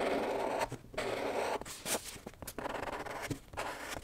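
A Sakura Micron fineliner pen scratching across vellum drawing paper in several quick strokes, each under a second, with brief pauses and a few light ticks between them as the pen is lifted and set down.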